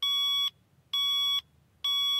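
Digital alarm clock sounding its wake-up alarm: a high electronic beep about half a second long, repeating roughly once a second, three beeps in all.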